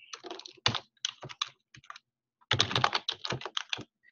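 Typing on a computer keyboard: scattered keystrokes for about two seconds, a short pause, then a quick run of keys until just before the end.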